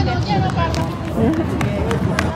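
High-pitched voices, a child's among them, talking and calling over outdoor crowd noise, with a few quick taps of running footsteps on boardwalk near the end.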